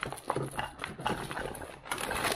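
Clear plastic waterproof dry bag crinkling and rustling as its stiff top is held open and handled, a run of irregular crackles.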